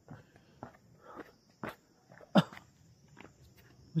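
Footsteps of a person walking on a hillside trail: irregular steps with one louder thud about two and a half seconds in.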